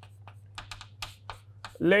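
Chalk writing on a chalkboard: an irregular run of quick taps and short scratchy strokes as the chalk strikes and drags across the board.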